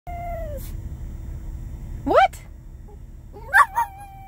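A small dog howling and 'talking': a short call that slides down in pitch, a rising whoop about two seconds in, then a couple of quick louder yelps near the end that run into a long call sliding down in pitch.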